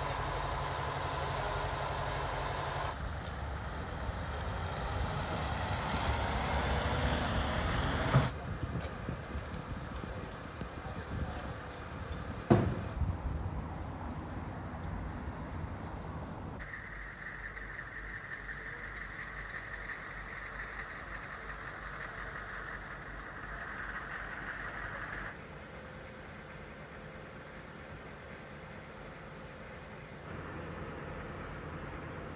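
Outdoor street ambience with vehicle noise, changing abruptly several times. Two sharp knocks stand out, about eight and twelve seconds in.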